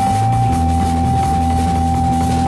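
Live jazz-rock band playing, with drum kit and electric bass under a single high note held steadily throughout. The bass moves to a new low note about half a second in.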